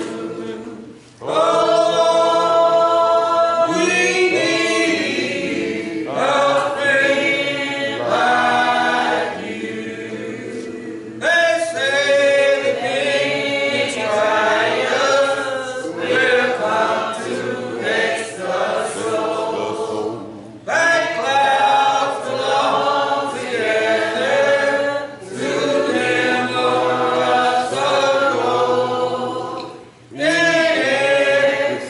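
A congregation singing a hymn a cappella, many voices together in long held phrases with brief pauses between lines.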